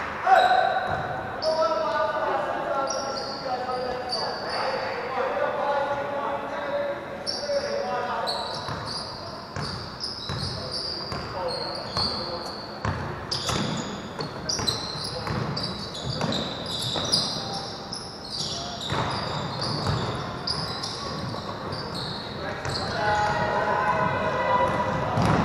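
Basketball dribbling and bouncing on a hardwood gym floor, with many short, high sneaker squeaks and players' and coaches' voices calling out, echoing in a large hall. The calls are busiest in the first several seconds.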